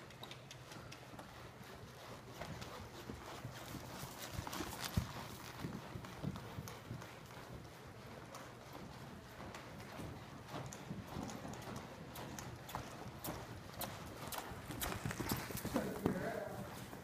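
A ridden horse's hooves striking loose dirt arena footing in a quick, uneven run of hoofbeats as it moves around the ring.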